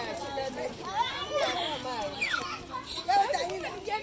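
Several children's voices talking and calling out at once, overlapping one another.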